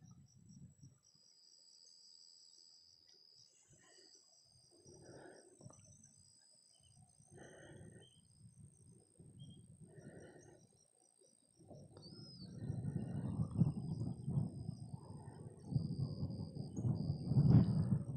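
Crickets chirping in a steady high-pitched pulsing trill. About two-thirds of the way in, a low rumble of wind on the microphone builds and becomes the loudest sound.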